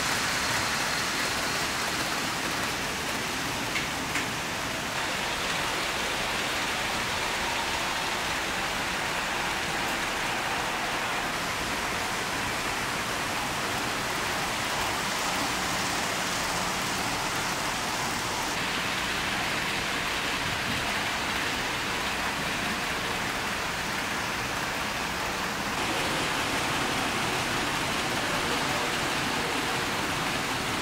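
HO-gauge model trains running on track: a steady rushing hiss of wheels rolling on the rails, its tone shifting a few times, about five seconds in, around eighteen seconds and near the end.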